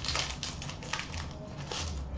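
Hockey trading cards handled by hand: scattered light clicks and rustles as cards and their plastic holders are slid and flipped through the fingers, over a low steady hum.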